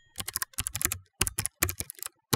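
Keyboard typing sound effect: quick runs of keystroke clicks in short bursts with brief pauses, sounding as text is typed out on screen.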